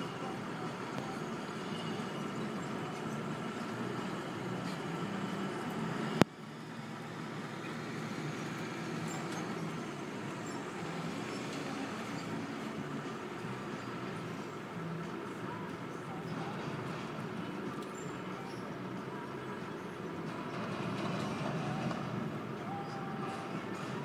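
Diesel engine of a cotton module truck running as it drives across a field, a steady rumble, with one sharp click about six seconds in.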